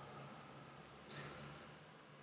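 Faint, steady low drone of a passing river boat's engine, with one brief soft click about a second in.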